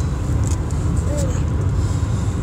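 Steady low rumble of road and engine noise inside the cabin of a car driving at highway speed.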